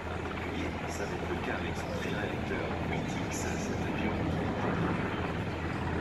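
An NH90 twin-turbine military helicopter flying, its rotor and engine noise a steady drone, with voices faintly in the background.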